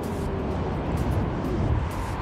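Steady wind rush on the microphone and rolling noise from a Yokamura i8 Pro electric scooter being ridden up a slope.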